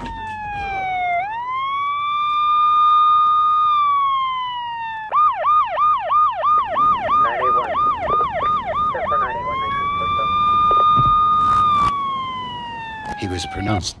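Ambulance siren: a slow wail that rises, holds and falls, then a fast yelp for about four seconds in the middle, then the slow wail again, fading down near the end.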